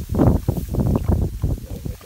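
Wind rumbling on the microphone, mixed with irregular scraping and knocks from a wooden-handled tool working wet mud.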